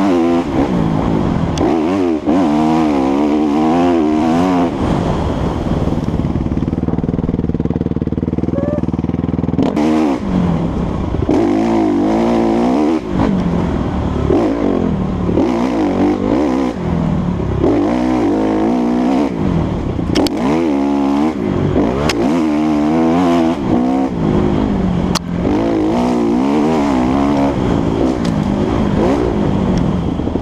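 Dirt bike engine being ridden hard, revving up and down over and over as the throttle is worked through the turns. It holds a steadier note for a few seconds about a quarter of the way in. A few sharp ticks come through in the second half.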